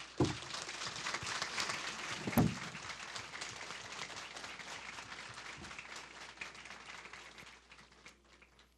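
A large indoor audience applauding. The clapping starts suddenly and thins out near the end, with one brief louder thump about two and a half seconds in.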